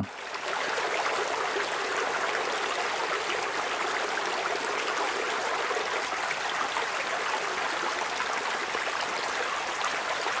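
Field recording of rain falling on pavement: a steady, even hiss of drops and trickling water. The low end is filtered away by EQ.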